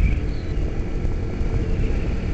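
Steady wind rush over the microphone over the running of a 2008 Kawasaki Ninja 250R's small parallel-twin engine, cruising on the road.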